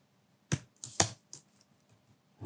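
Computer keyboard keystrokes: about four separate key presses in two seconds, two of them sharper than the rest.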